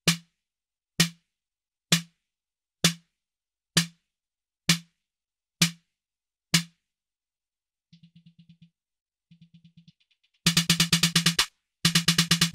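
Roland TR-8 drum machine kick drum: eight single hits a little under a second apart, each a short click with a low body. After a pause come faint, fast repeated hits, and about ten and a half seconds in a loud rapid roll of kicks.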